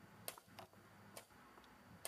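Wooden chess pieces knocking on the board as a move is played: three faint, sharp clicks, the first the loudest.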